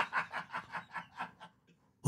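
A man's breathy chuckling laughter, a quick run of short puffs, about six a second, that fades away within a second and a half.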